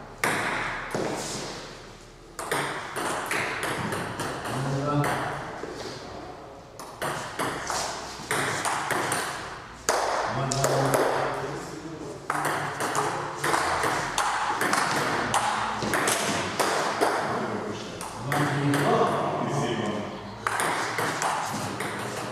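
Table tennis ball clicking back and forth off the paddles and the table in rallies, with short gaps between points.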